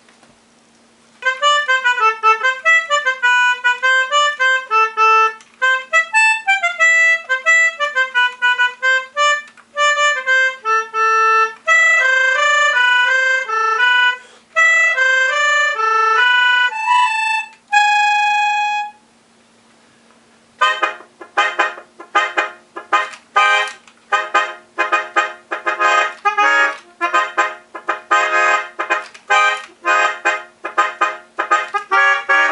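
Vintage Hohner Melodica Piano 26, a mouth-blown free-reed keyboard, playing a flowing tune of single notes that ends on one long held note. After a short pause it plays quick, short repeated notes.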